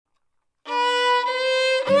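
Fiddle starts after about half a second of silence, holding long bowed notes. An acoustic guitar comes in near the end as the tune gets under way.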